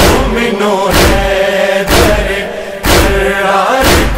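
A voice chanting a devotional Urdu poem in praise of Imam Ali. A deep drum hit falls about once a second.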